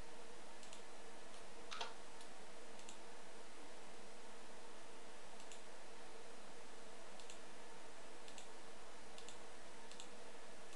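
Scattered computer mouse clicks and a few keyboard key taps, about ten in all, the sharpest about two seconds in. Under them runs a steady hiss with a faint hum.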